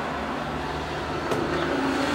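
Steady mechanical hum and hiss, with a single click about one and a half seconds in.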